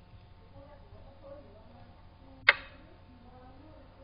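A single sharp click of a xiangqi piece being set down, the chess program's move sound as a black pawn is moved, about two and a half seconds in.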